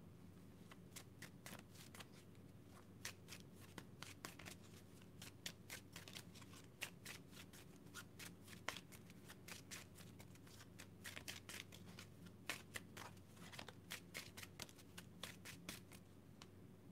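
A deck of tarot cards being shuffled by hand: a fast, irregular run of soft card-on-card clicks, faint, starting about a second in.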